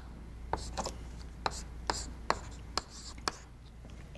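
Chalk writing on a chalkboard: a string of sharp taps about every half second, with faint scratching strokes between them, as figures are written.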